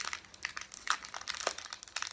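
Plastic Kit Kat wrapper crinkling as fingers pick and pull at it to tear it open, a run of irregular small crackles.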